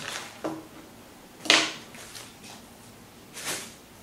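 Chef's knife cutting through the base of a celery head on a cutting board: a light tap about half a second in, then one loud, crisp crunch about a second and a half in, and a softer crisp sound near the end as the stalks come apart.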